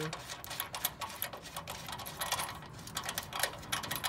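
Bolts and washers being hand-threaded into a steel engine-mount bracket under a car, making quick, irregular metallic clicks and ticks in short clusters.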